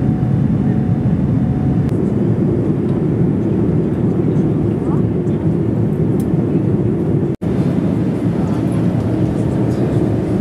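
Steady engine and airflow noise of a Boeing 787 airliner's Rolls-Royce Trent 1000 jet engines, heard from inside the cabin in flight. The sound cuts out for an instant about seven seconds in.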